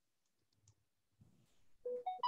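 Near silence with a few faint clicks in the first second, then a clear, steady tone starting just before the end.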